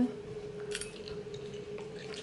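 A person chewing a forkful of fried egg, with one brief soft click or scrape about three quarters of a second in, over a steady low hum.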